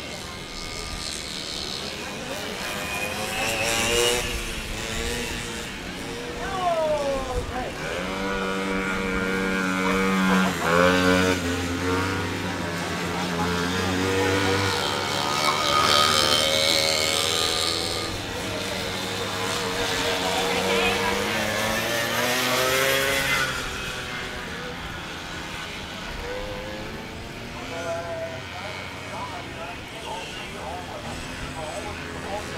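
Racing motorcycles on a grass track, engines revving up and down and swelling as riders pass. The loudest, closest pass comes about halfway through.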